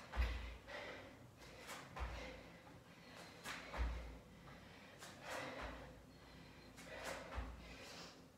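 Five dull thuds of bare feet landing on a floor mat, about one every two seconds, each with a hard breath out, as a person does burpees.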